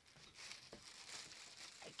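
Near silence with a faint, soft rustling.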